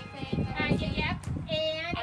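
A woman's and a child's high voices talking, with one drawn-out high note near the end.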